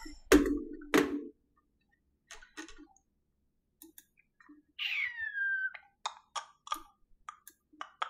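Scattered clicks of a computer mouse and keyboard, coming closer together in the last couple of seconds. Two sharp knocks sound just after the start, and a short falling squeak-like tone about halfway through.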